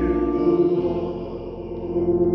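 Slow hymn sung by men's voices, long low notes held steadily, getting softer in the second half.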